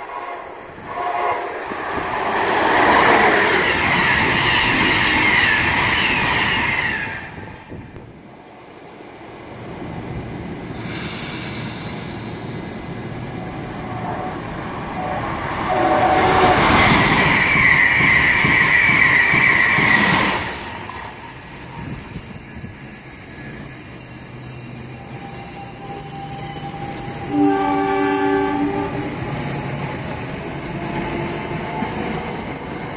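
Electric trains passing through a Northeast Corridor station at speed. There are two loud spells of wheel and rail noise, one in the first few seconds and one in the middle, and a train horn sounds in short blasts near the end.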